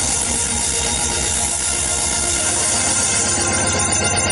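Loud live electronic dance music from a festival sound system, recorded close to the speakers so it sounds distorted and smeared, with a fast, evenly repeating bass pulse.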